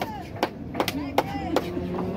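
Four sharp knocks, evenly spaced about two and a half a second, over low crowd voices.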